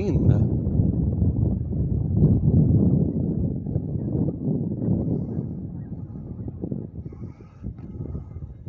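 Wind buffeting the microphone: a loud, low rumble that eases off over the last few seconds.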